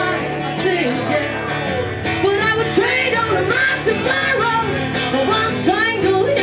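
Live music from a guitar-and-voice duo: a guitar played with bending, sliding melody notes over a steady accompaniment, with a woman singing.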